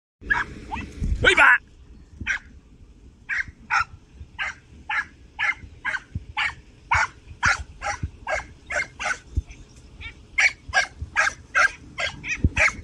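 A young podenco hound giving tongue on a rabbit's scent trail: short, sharp yelping barks repeated about two a second. A louder, longer burst comes about a second in.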